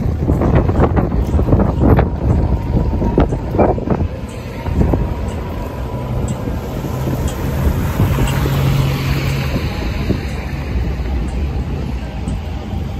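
Wind buffeting the microphone in gusts over the low rumble of street traffic, with a tram passing close by and a steady low hum in the middle stretch.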